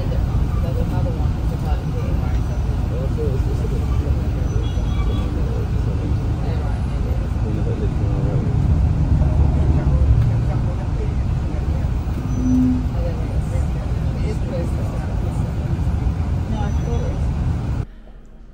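Steady low rumble of a coach bus's engine and road noise, heard from inside the cabin as it drives through city traffic, with faint voices in the background.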